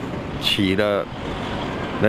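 A man speaks a short phrase, then the noise of a motor vehicle on the road, a low rumble with tyre hiss, fills the second half.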